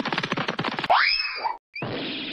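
Cartoon sound effects: a rapidly vibrating spring 'boing', then a smooth rising slide-whistle glide, with a short hiss near the end.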